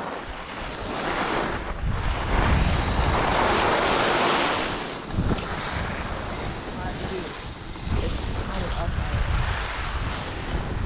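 Wind buffeting the microphone of a camera on a moving skier, with the hiss and scrape of skis sliding over snow, loudest a few seconds in as the descent starts.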